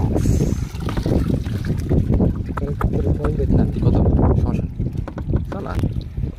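Shallow river water splashing around people handling a cane fish basket, with wind buffeting the microphone as a low, uneven rumble. Faint voices are heard in the background.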